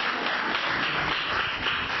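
A small group of people applauding, many hands clapping at once.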